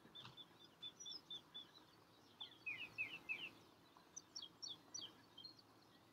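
Small songbirds singing: a run of short, evenly spaced high chirps, then a louder phrase of quick falling notes near the middle, then more quick high notes.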